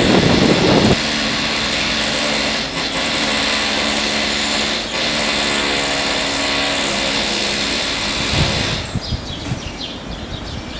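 Wind buffeting the microphone for about a second, then a small motor running steadily with a hiss, which drops away about nine seconds in.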